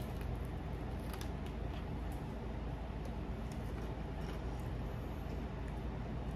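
A person biting into and chewing a piece of fried chicken, with a few faint crunches of the crust over a steady low hum of room noise.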